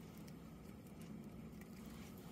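Very quiet room tone with a faint steady low hum and no distinct events.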